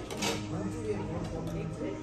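Indistinct conversation of other diners in a restaurant dining room, steady throughout.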